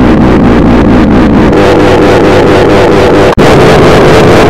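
A bell sound clip put through heavy audio effects: loud, distorted and clipped, its pitch warbling, with a steady pulsing flutter. It drops out for an instant near the end as one effect cuts to the next.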